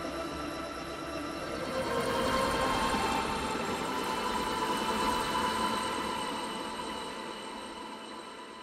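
A dense, steady drone of many held pitches that swells about two seconds in, then slowly fades away.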